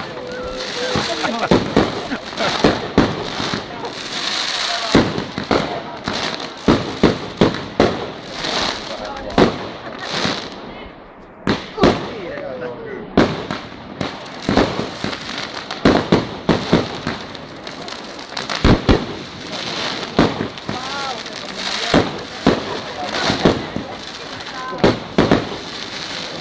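Aerial fireworks display: a rapid, irregular string of sharp bangs from bursting fireworks, with a continuous hissing crackle between them that eases briefly about eleven seconds in.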